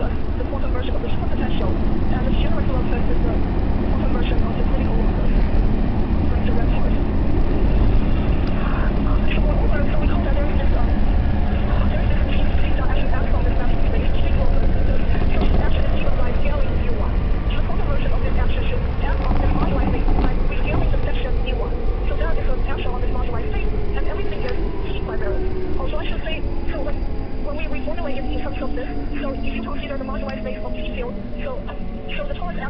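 Electric train running, heard from inside the carriage: a steady low rumble with rattles and clicks. Over the second half a whine falls steadily in pitch as the train slows for a station.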